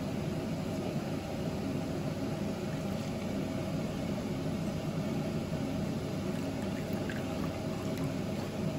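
Soy sauce and then vinegar poured in a thin stream into a small ceramic bowl, over a steady low background hum.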